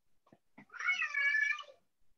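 A single drawn-out pitched animal cry lasting about a second, its pitch dipping and then holding steady, with a few faint clicks just before it.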